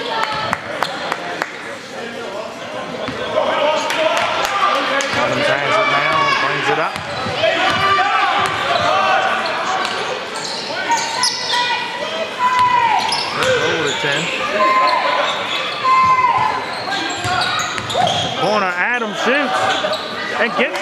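A basketball dribbled on a hardwood gym floor, repeated bounces mixed with the voices of players and spectators, echoing in a large gymnasium.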